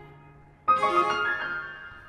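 A held low cello note fades away, then a grand piano chord is struck sharply under a second in and left to ring and die down.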